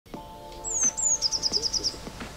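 A bird calling: two high notes that each fall in pitch, followed by a fast run of about eight short chirps, over a faint steady musical tone.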